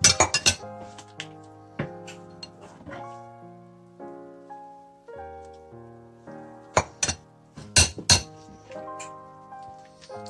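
A metal ladle and spoon clinking against a glass mixing bowl and a frying pan while egg yolk and cream is tempered with hot broth: a quick run of clinks at the start, single clinks over the next few seconds, and another cluster about seven to eight seconds in. Background music with sustained piano-like notes plays throughout.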